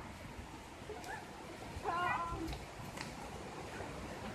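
Steady rush of a rocky forest stream, with a short high-pitched wavering call about two seconds in.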